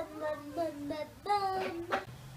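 A child singing a short tune, a few held notes stepping up and down in pitch.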